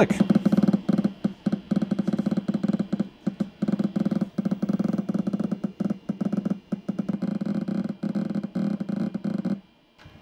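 IBM XT's PC speaker, played through amplified speakers, making rapid, irregular clicks, many a second. This is a software-simulated hard-drive seek sound, with one click for each virtual head movement while a disk benchmark reads and writes. The clicking stops suddenly shortly before the end.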